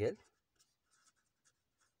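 Pencil writing on lined notebook paper: a string of short, faint scratching strokes as words are written out.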